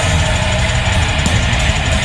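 A metal band playing live: distorted electric guitars over bass and drums, with one high note held steady throughout.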